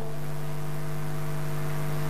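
Steady electrical hum with a low buzz and faint hiss, even in pitch and level throughout: the background hum of the race broadcast's audio feed, heard while the commentator pauses.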